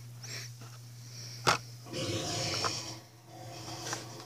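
A blister-packed toy card being handled, with one sharp tap about a third of the way in and a brief low vocal noise from the person a moment later, over a steady low hum.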